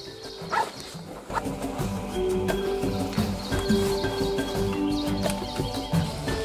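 Background music coming in about a second in, with held notes over a steady beat.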